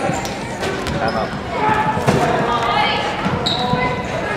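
Spectators' voices echoing in a gymnasium, with a basketball bouncing on the hardwood court a few times.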